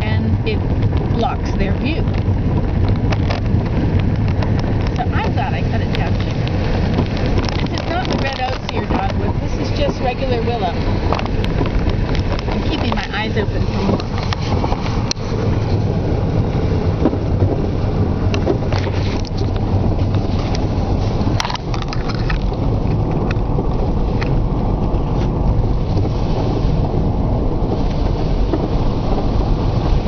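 Car driving on a gravel road, heard from inside the cabin: a steady low engine and road rumble with tyre noise, broken by scattered clicks and rattles.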